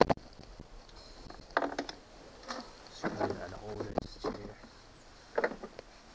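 Hard plastic parts of a ride-on toy being handled as the seat is lifted off: a sharp knock at the start, then scattered short clatters and scrapes.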